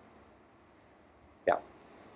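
A pause in a man's lecture voiceover, near silence, broken about a second and a half in by one short, clipped spoken "yeah".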